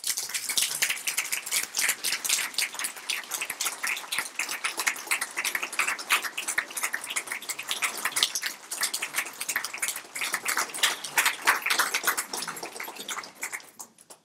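A roomful of people applauding, dense clapping that stops abruptly at the end.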